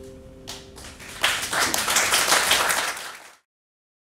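The last shamisen note of the piece rings and fades, then audience applause breaks out about a second in and is cut off abruptly near the end.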